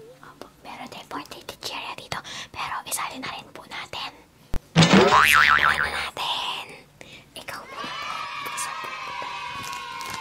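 Whispering and small mouth clicks close to a handheld ASMR microphone. About five seconds in, a loud voice slides up in pitch. Near the end comes a steady high-pitched tone.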